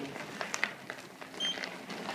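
Mobility scooter moving over a gritty garage floor: faint crackling and clicking from the tyres, with a short high tone about one and a half seconds in.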